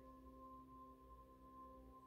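Faint background music of sustained, ringing held tones, like a singing bowl drone, with a new note coming in near the end.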